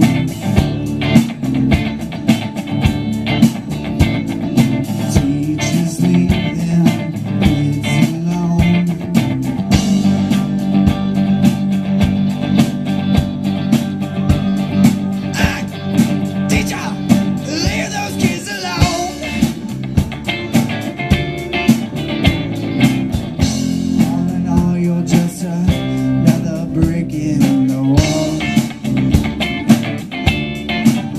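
Live rock band playing: electric guitar, bass guitar and drums, over a steady drum beat.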